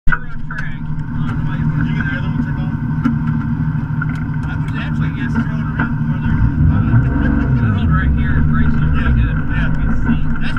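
Lexus GS300 drift car's engine idling, heard inside its stripped cabin, revved up and back down once around seven seconds in.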